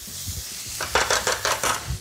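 Chopped onions sizzling in olive oil in a frying pan, with a spatula stirring and scraping them in a run of short strokes in the second half.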